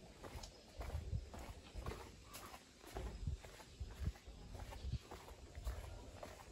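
Footsteps on a concrete alley path: low, soft thumps about once a second with small scuffs and clicks in between.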